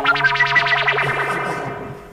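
A short burst of distorted electric guitar music that starts suddenly, a quick run of high notes over a held low note, fading away toward the end.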